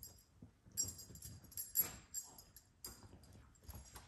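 Two dogs playing on a rug, with irregular bursts of collar tags jingling and soft thumps of paws.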